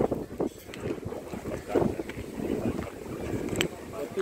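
Wind buffeting the phone's microphone in uneven gusts, with a single sharp click about three and a half seconds in.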